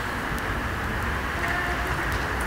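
Steady outdoor background noise, a low rumble under an even hiss, with no voice in it; a faint short tone sounds about one and a half seconds in.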